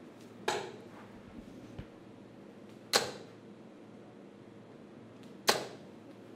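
Three steel-tip darts thrown one after another into a Unicorn Eclipse HD bristle dartboard, each landing with a sharp hit, about two and a half seconds apart.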